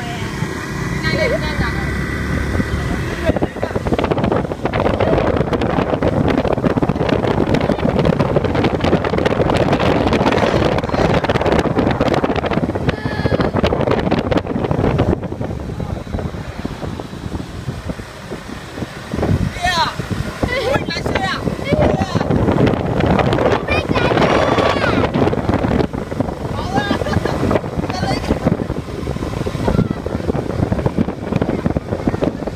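Wind buffeting a microphone moving along a road, over the running noise of traffic and motor scooter engines; the rush eases briefly a little past halfway and then picks up again.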